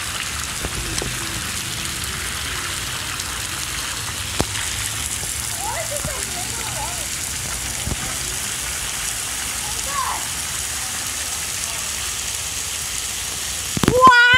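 Splash pad water jets spraying and pattering steadily onto wet concrete, a constant hiss of falling water, with faint distant voices now and then.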